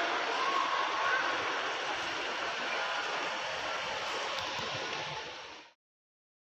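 Steady outdoor rush of traffic and ambient noise with faint distant voices, fading out about five and a half seconds in.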